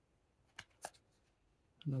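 Stiff trading cards being flicked in the hand as one is slid from the front of the deck to the back: two short, sharp card snaps about a quarter of a second apart.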